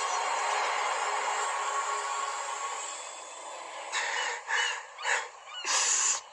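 A loud, steady hissing wash with faint held tones fades over the first three seconds. Then seagulls call in four short cries, the last one the loudest.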